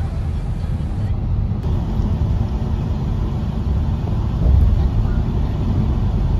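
Steady low rumble of a car driving along a road, heard from inside the cabin, with tyre and road noise above it.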